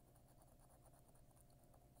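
Faint scratching of a coin rubbing the coating off a scratch-off lottery ticket.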